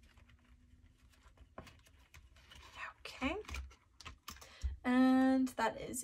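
Light rustling and small clicks of paper bills and clear vinyl cash-envelope pockets being handled in a ring binder. From about halfway a woman's voice comes in, with a long held sound about five seconds in.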